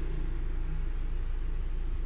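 Steady low rumble of the Ford Ranger's engine idling, heard from inside the cabin.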